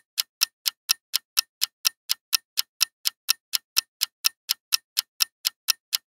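Clock-ticking sound effect for a countdown timer, with evenly spaced sharp ticks at about four a second and dead silence between them.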